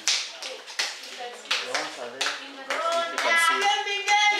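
Hand claps, a handful spaced irregularly over the first two seconds, from a group of children, followed by voices speaking in the second half.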